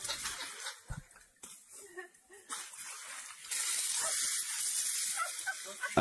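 A rush of water sprayed from an elephant's trunk, starting suddenly about three and a half seconds in as a steady hissing gush.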